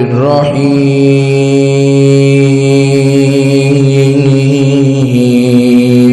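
A man's voice chanting Quran recitation through a microphone. After a short wavering turn at the start, he holds one long, steady note, drawing out the end of the verse.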